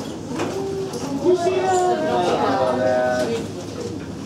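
Speech only: students talking among themselves in a classroom, several overlapping voices.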